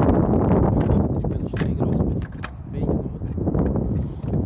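A golden eagle rummaging with its beak among items in a car boot: a few sharp clicks and knocks, clearest about a second and a half in and again near the middle, over a steady low rumble.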